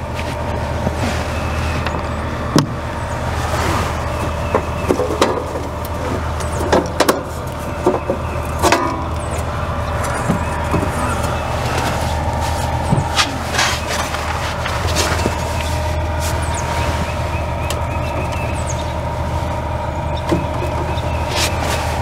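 Screws being backed out and the sheet-metal cover of an RV power pedestal opened: scattered sharp clicks and metallic knocks, over a steady low mechanical hum.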